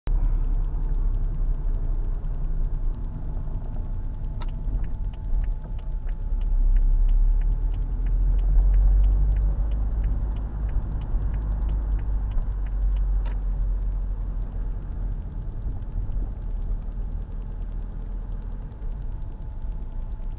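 Low engine and road rumble of a car driving, heard from inside the cabin through a dashcam. Through the middle a light ticking runs for several seconds at about three ticks a second, with a sharper click where it starts and where it stops.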